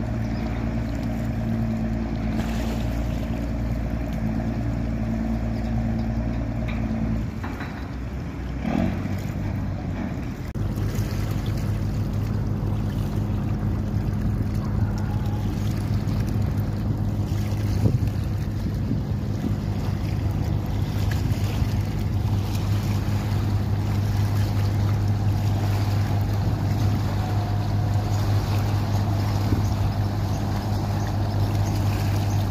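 Engines of express passenger boats running past at speed: a steady low drone with the rush of water. The drone dips about seven seconds in and comes back stronger from about ten seconds in as a second boat passes.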